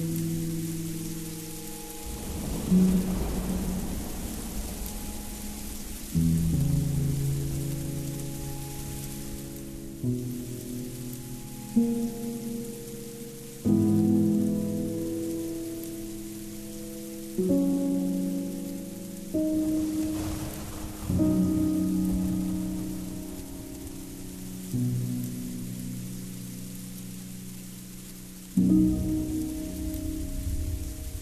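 Slow, melancholy ambient music: low sustained chords, each newly struck every two to four seconds and then slowly fading, over a steady hiss like falling rain.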